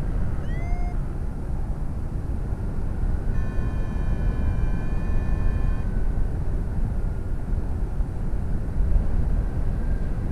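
Wind rushing over the microphone of a paraglider in flight, a steady low rumble. A short rising chirp sounds about half a second in, and a steady high tone holds from about three to six seconds in.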